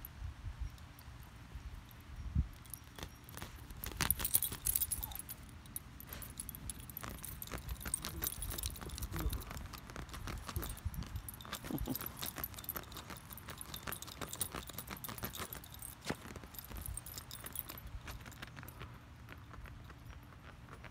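Metal tags on a small dog's collar jingling in scattered bursts as it moves about, mixed with knocks and rustling from close handling.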